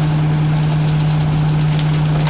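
Isuzu rear-loader garbage truck's engine running steadily, with a strong, even low hum.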